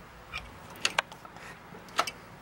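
A few sharp clicks and taps of hard plastic and metal computer parts being handled and snapped into place on a CPU heatsink, two close together about a second in and a louder one near the end.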